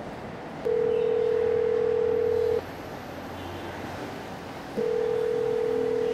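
Telephone ringback tone heard through a phone: a single steady tone sounding twice, each about two seconds long with a two-second gap, as an outgoing call rings at the other end.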